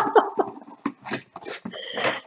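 A woman laughing in short bursts, with a breathy exhale near the end.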